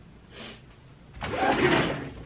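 Clothes being handled: a short soft rustle about half a second in, then a louder rustle lasting most of a second near the end.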